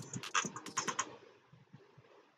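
Quick clattering clicks of computer keyboard keys for about the first second, then dying away to a faint hiss.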